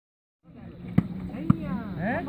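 Two sharp smacks of a volleyball struck by hand, about half a second apart, over players shouting.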